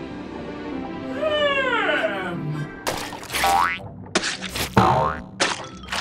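Cartoon sound effects over background music: a drawn-out falling glide about a second in, then several quick springy boing-type sweeps, each starting sharply, from about three seconds on.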